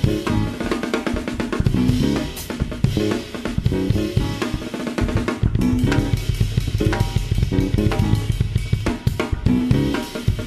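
Jazz drum kit played fast and busy, with snare, rimshots, bass drum and hi-hat to the fore, over sustained low pitched notes from the rest of the trio.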